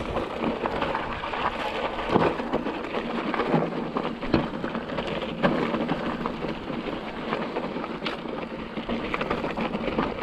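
Mountain bike tyres crunching and rattling over loose rock and dirt on a fast descent, with a steady clatter of the bike's parts and several sharper knocks as the wheels strike rocks.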